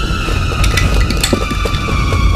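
Cartoon earthquake sound effect: a deep rumble with scattered rattling and clattering, under tense music with a long, slowly falling tone.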